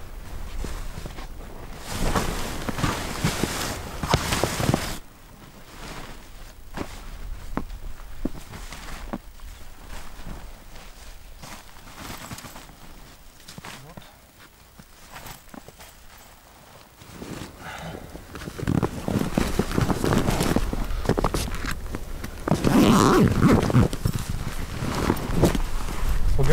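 Fabric of a Bereg Kub 2.20 cube tent rustling and flapping as it is collapsed and folded by hand, with footsteps on snow. It is loudest in two stretches, near the start and over the last third, and quieter in between.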